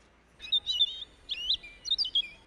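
A bird chirping: three short bursts of quick, sliding high-pitched calls about half a second apart, over otherwise quiet surroundings.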